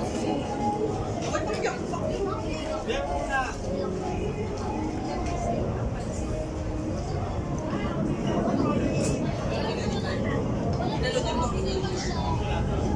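Diners' voices and chatter in a busy eating place, over a steady low rumble of background noise.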